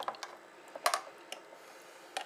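Light plastic clicks and taps as a plastic food container is handled in a plastic tub of water: a few sparse clicks, the loudest just under a second in.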